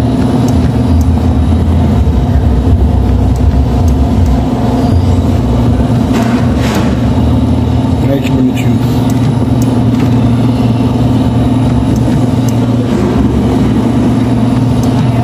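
Electric churros-forming machine running with a steady low motor hum as it extrudes and cuts filled dough pieces, with a few light clicks.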